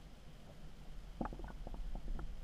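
Muffled underwater sound picked up inside a GoPro's waterproof housing: a low rumble, with a quick run of small clicks and pops in the second half.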